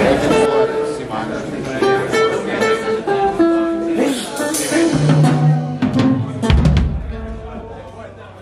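Band trying out instruments before playing: a run of held single notes stepping down in pitch, then a few low electric bass guitar notes and some sharp drum and cymbal hits in the second half, with voices in the room.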